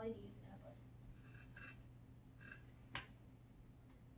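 Near silence in a small room: a low steady hum with faint soft hissy sounds, and one sharp click about three seconds in.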